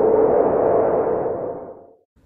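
Transition sound effect for a title card: one steady mid-pitched tone under a soft hiss, fading out over the last second.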